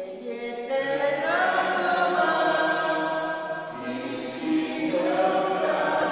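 Voices singing a slow liturgical hymn in long held notes, with a short break between phrases just after the midpoint.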